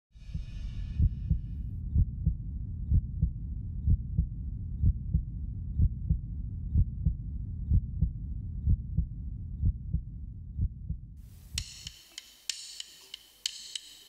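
Deep heartbeat sound effect, a double thump about once a second over a low rumble, fading out about twelve seconds in. After it comes a faint hiss with scattered clicks.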